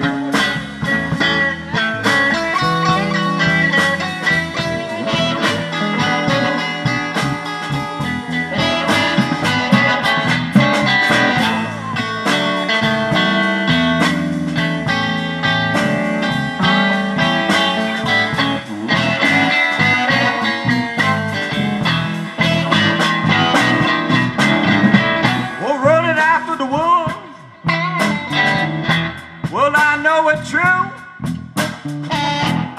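A live electric blues band playing an instrumental stretch, with electric guitars over bass and drums.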